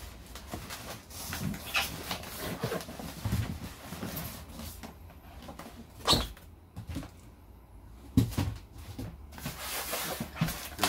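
Handling of a polystyrene packing box being moved and set down on a wooden floor: rubbing and scraping with a series of sharp knocks, the loudest about six seconds in and another just past eight.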